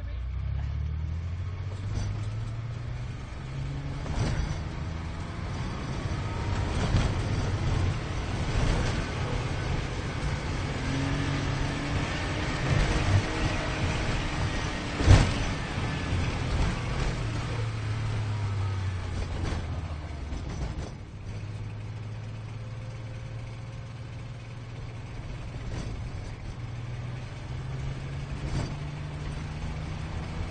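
Car engine driven hard, its pitch climbing and dropping in steps as it shifts gears, with a sharp knock about halfway through. The engine note settles to a steadier level in the later part before climbing again near the end.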